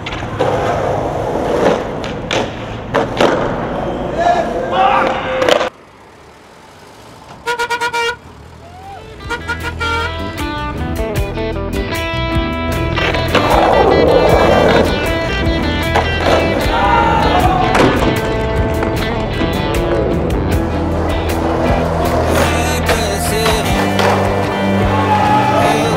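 Skateboard wheels rolling on a street with sharp clacks of tail pops and landings for the first six seconds. After a brief lull comes a short run of horn-like beeps, then music with a steady bass line takes over.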